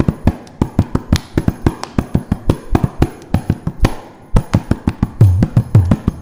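Mridangam playing a fast, dense run of strokes during a Carnatic percussion solo (tani avartanam). Deep booming bass strokes from the left head come in near the end.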